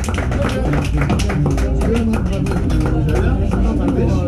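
Live blues band playing, electric guitar and keyboards over a steady beat and bass line, with a voice speaking over the music.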